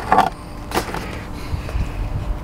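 Two short handling noises from a fast-food chicken sandwich and its paper wrapper: a louder one just after the start and a sharper one just under a second in. Under them runs the steady low rumble of the car.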